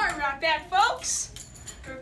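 A person's voice making wordless sounds that glide up and down in pitch through the first second, then a short hiss.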